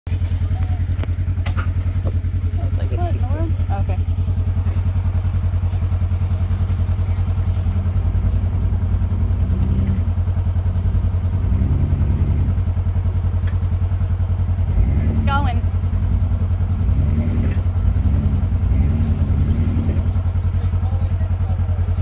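Off-road vehicle engine running steadily. From about halfway through, the revs rise and fall in a series of short blips, about one a second.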